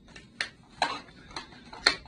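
Cardboard product boxes being handled and opened: four sharp taps and clicks about half a second apart, the last one loudest.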